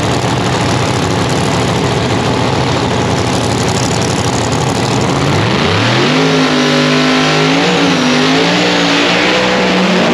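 The Murder Nova Chevy Nova no-prep drag car's engine runs at a rough, lumpy idle. About five and a half seconds in, it revs sharply up and holds at high rpm, wavering, as the car does a burnout with its rear tyres spinning.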